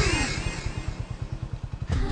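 A motorcycle engine running with a rapid, even putter.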